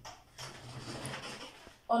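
Dry-erase marker rubbing across a whiteboard as the numeral 3 is written: a soft scratchy hiss lasting about a second and a half, with a small click near the end.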